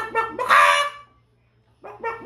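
A man vocalising into his cupped hands: a fast string of short pitched hoots, broken about half a second in by one loud honking squawk lasting about half a second. The hoots start again near the end.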